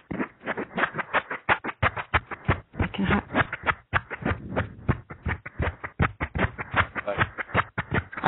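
A voice coming through an internet call, chopped into rapid crackling fragments so that no words come through: a badly broken-up connection.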